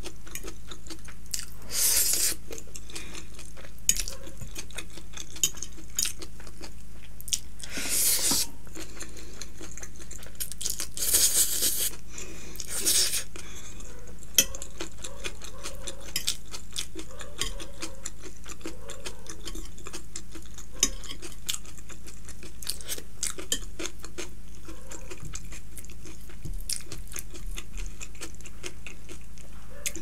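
Close-miked eating of chow mein noodles: chewing, with sharp clicks and scrapes of a metal fork on the plate and a few short, louder noisy bursts.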